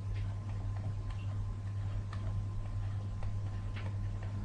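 Light, irregular clicks and taps of a stylus on a pen tablet or touch screen while numbers are handwritten, over a steady low electrical hum.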